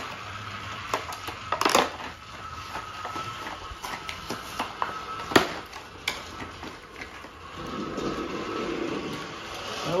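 A toy's cardboard box and plastic packaging tray being handled and pulled open, with crinkling, clicks and one sharp snap about five seconds in. A battery-powered Thomas & Friends toy engine runs on the plastic track underneath.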